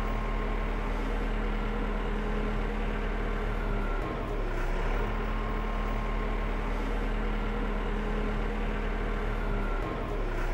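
Farm tractor's diesel engine running steadily at low speed while it drives slowly and tows a folded flex-wing mower.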